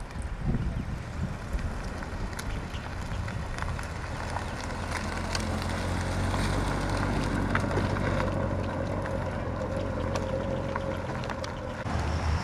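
Supercharged 6.2-litre LT4 V8 of a Corvette Z06 running at low speed as the car rolls slowly past. It is a low, steady rumble that grows louder over the first few seconds.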